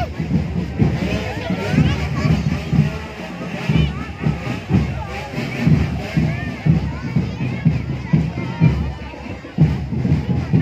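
Marching drum band playing a steady beat, about two drum hits a second, with crowd voices chattering over it.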